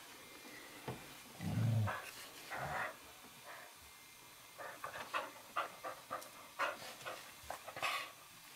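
Two dogs play-wrestling: a short low growl about a second and a half in, then a run of quick, short breaths and snuffles. It is play, not a fight.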